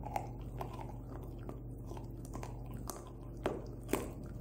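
Miniature Australian Shepherd gnawing a raw breastbone, its teeth crunching and cracking on bone and gristle in irregular bites, with two louder cracks near the end.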